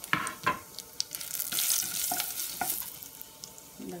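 A spoon stirring ground spices in a hot metal saucepan: a few sharp clinks against the pan in the first second, then a soft sizzle.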